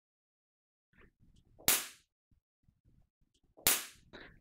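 Two sharp hand claps or slaps, one about two seconds in and one near the end, each with a brief room ring, with faint rustling between them.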